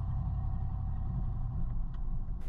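Steady low rumble of a 2023 Cadillac XT4 driving through tight turns at low speed: engine and road noise.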